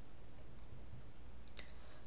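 Quiet pause with a low steady room hum and a couple of faint clicks, one about a second in and a clearer one near the end.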